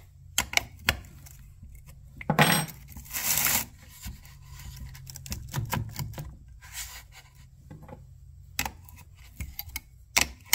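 Small metal clicks and clinks of a wrench working the bar nut and side plate on a Homelite chainsaw, with a louder clank a couple of seconds in followed by a short scraping rustle.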